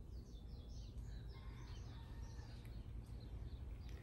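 Birds chirping faintly, a quick run of short falling chirps in the first couple of seconds, over a low steady rumble.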